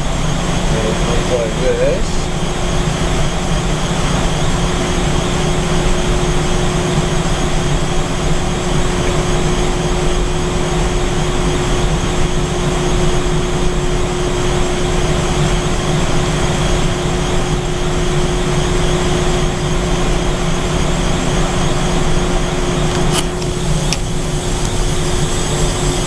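Running HVAC equipment: a loud, steady mechanical hum with one constant tone over it, unchanging while a thermocouple reading settles. A couple of light clicks come near the end.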